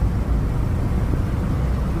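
Car driving along a country road, heard from inside the cabin: a steady low rumble of engine and tyres.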